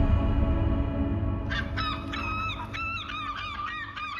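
The low tail of a music cue dies away, and about one and a half seconds in birds start calling: short, squeaky calls that bend in pitch, about three a second, in a courtyard soundscape.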